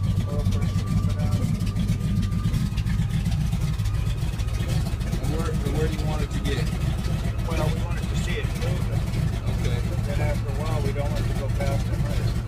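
De Havilland Beaver's Pratt & Whitney R-985 nine-cylinder radial engine running steadily just after a cold start and still warming up, heard from inside the cockpit as a constant low drone.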